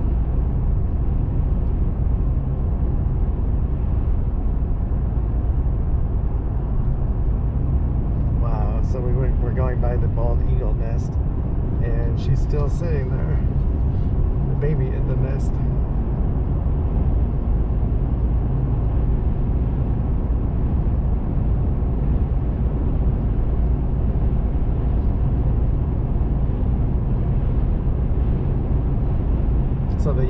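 Steady road and engine rumble of a vehicle driving at road speed, heard from inside the cabin.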